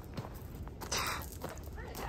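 Footsteps on a dirt and gravel trail, with the faint knocks of a wooden walking stick being planted as the walker goes, and one short, louder scuff about a second in.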